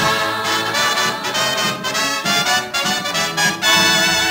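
Swing dance band with brass playing the instrumental final bars of an old 1940s recording, no singing, ending on a loud held chord near the end.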